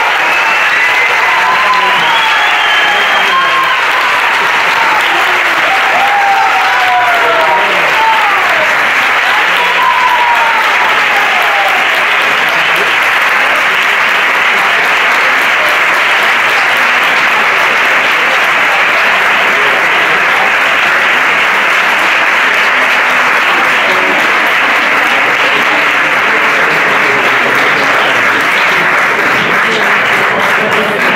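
Audience applauding loudly and steadily for a long stretch, with voices calling out over the clapping during roughly the first ten seconds.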